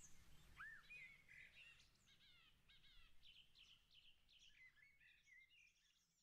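Faint forest birdsong: several birds chirping and whistling in short calls, thinning out and fading away near the end.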